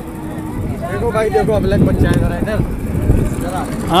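Men's voices talking in the background, with a low rumble through the middle of the stretch.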